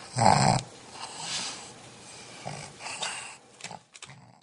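A pug's noisy breathing and snuffling right at the microphone, with one loud short burst in the first half-second followed by a few quieter puffs of breath.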